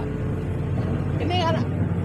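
Komatsu PC400-8 excavator's diesel engine running at low idle, heard inside the cab as a steady low hum. At this engine speed the hydraulic pump isn't turned fast enough, so the attachment moves slowly.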